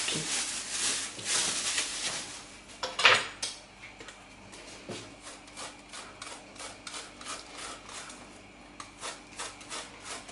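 Plastic film rustling as it is pulled off a block of frozen cocoa shortcrust dough, a knock about three seconds in, then a metal box grater rasping through the frozen dough in steady strokes, a few a second.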